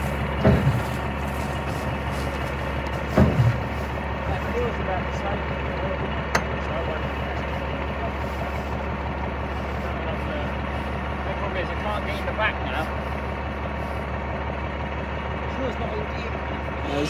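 A vehicle engine idling steadily, with a few short shouted words over it.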